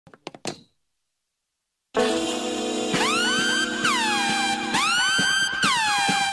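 Car alarm sounding about two seconds in: loud, repeated swooping electronic tones that glide and settle, over and over. A few faint clicks come just before it.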